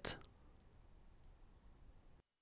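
A voice's final consonant, a brief high hiss at the very start, then near silence: faint room tone.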